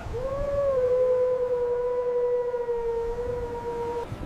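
Tsunami warning siren sounding one long held tone that rises briefly at the start and then stays level, over a low rumble of surf.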